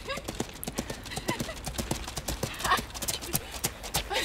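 Pony's hooves galloping on a wet, slushy track: a quick, uneven run of hoofbeats throughout.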